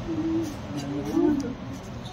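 A person's voice holding one long, wavering hum for about a second and a half, a drawn-out hesitation sound between words.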